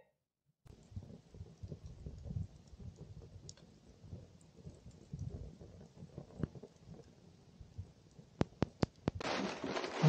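Wood fire crackling faintly in an open fire pit, with small uneven crackles and a quick run of four or five sharp pops near the end.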